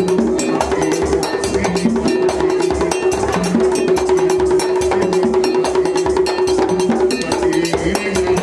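Haitian Vodou ceremonial drumming: drums beating a fast, steady rhythm with a held tone ringing over it.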